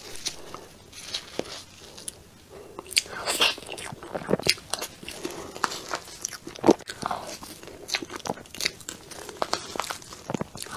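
Close-miked eating sounds: a metal spoon scooping and clicking against a plastic tub of soft cream cake, and wet mouth sounds as the cake is eaten, coming as irregular clicks and smacks.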